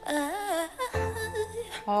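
A woman's voice singing a melody that bends up and down in pitch, over soft backing music.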